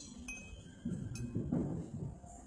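Metal cutlery clinking against dishes at a table while eating: about three sharp clinks, each with a brief ring, the last just after a second in.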